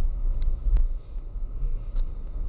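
Low, steady rumble of a car's engine and tyres, heard from inside the cabin, as the car drives slowly down a city street. A couple of faint clicks come within the first second.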